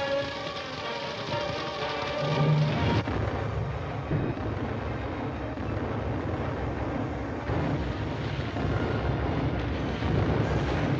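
Orchestral film music for about three seconds. The music then gives way to a long, low rumbling explosion and the noise of a large fire, as ammunition boxcars blow up.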